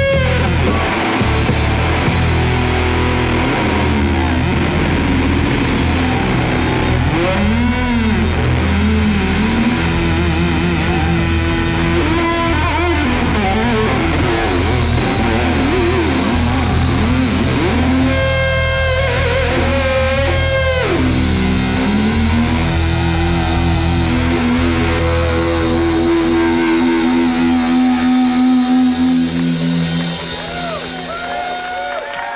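Live rock band playing an instrumental passage: electric guitar with bending, sliding lead notes over bass and drums. About four seconds before the end the bass drops away and the band hits a series of accents.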